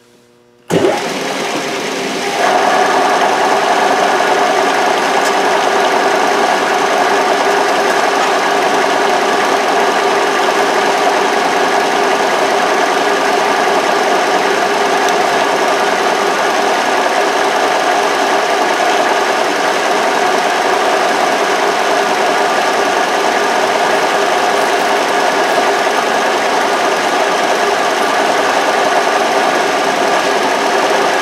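Milling machine plunging a large shop-made two-flute 2-inch ball nose end mill straight into mild steel without a pilot hole. The sound starts suddenly about a second in, grows louder a moment later as the cutter bites, then runs steadily with several steady ringing tones over the cutting noise. The mill struggled with so large a two-flute cutter: its table lock would not hold the table steady.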